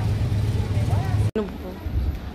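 City street traffic, a steady low rumble, which cuts off suddenly a little over a second in and gives way to quieter surroundings.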